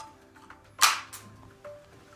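Two sharp metallic clicks about a third of a second apart near the middle, the first much the louder, as the detachable magazine of a Krieghoff Semprio straight-pull rifle is worked at the magazine well. Faint background music with held notes runs underneath.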